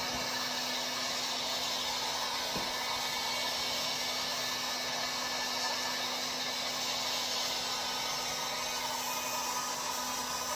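Electric heat gun blowing steadily, a rush of air with a steady motor hum beneath it, as it is played over a car tail light assembly.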